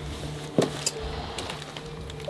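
Low steady droning tones of background music, with two short knocks of footsteps on rubble a little over half a second in.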